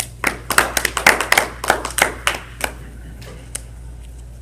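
A few people clapping briefly in a small room: a loose, uneven run of claps that dies away after about two and a half seconds, with a couple of stray claps a little later.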